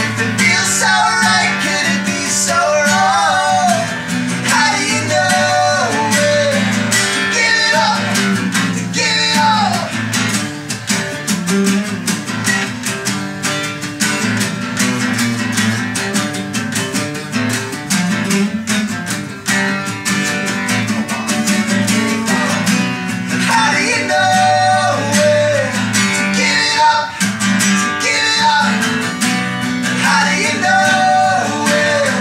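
Acoustic guitar strummed with two male voices singing a song. The voices drop out for a strummed guitar passage in the middle and come back about three-quarters of the way through.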